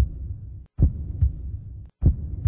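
Heartbeat sound effect under the closing logo: deep double thumps, lub-dub, repeating about every 1.2 seconds, each beat cut off abruptly before the next.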